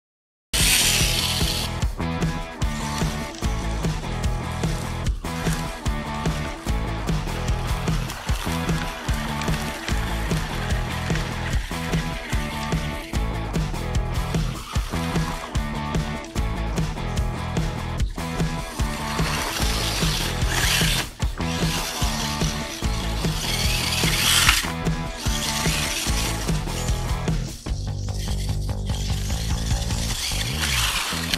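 Background music with a steady beat, starting abruptly out of silence about half a second in.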